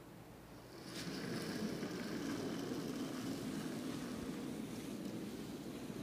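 A curling stone released about a second in with a faint click, then a steady low rumble as it slides along the pebbled ice.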